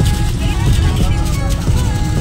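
Steady low rumble of a moving car heard from inside the cabin: engine and road noise, with faint voices in the background.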